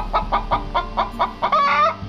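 Domestic hen clucking in a quick, even run of about six or seven clucks a second, ending in one longer, drawn-out call near the end.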